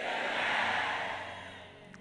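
A large congregation shouting "Amen" together in answer to the call for a loud Amen. The mass of voices swells and then fades away within about a second and a half.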